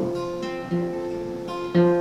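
Steel-string acoustic guitar played alone, with three strokes, each followed by chords left to ring.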